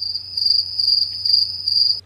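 Cricket chirping sound effect used as the comedy 'awkward silence' gag: a steady high trill that pulses about two or three times a second, starting and cutting off abruptly.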